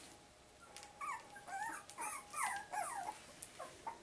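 A four-and-a-half-week-old Cavapoo puppy whimpering: a quick run of short, high whines that bend up and down in pitch, starting about a second in and stopping just past the three-second mark.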